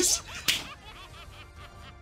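Cartoon-style anime sound effects: a sharp, whip-like crack about half a second in, followed by a quick run of small warbling chirps that fade away.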